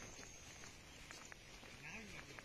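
Near silence: faint outdoor background with a few faint ticks, and a faint low call that rises and falls near the end.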